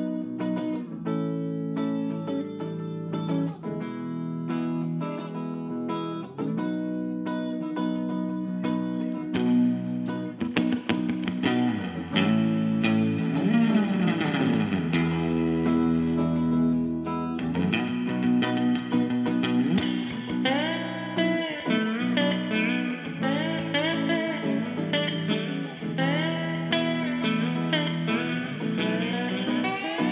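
A live band's instrumental break led by electric guitar: a Stratocaster-style guitar plays a lead line over the band's backing, with notes bent and sliding up and down, busiest from about twelve seconds in and again over the last third.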